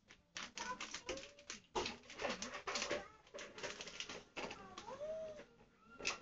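Rapid clattering and knocking of handled objects, with several short high-pitched calls that rise and fall in pitch.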